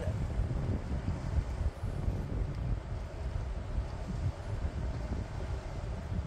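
Wind buffeting the microphone in an uneven low rumble, over a steady hiss of sea surf breaking on rocks.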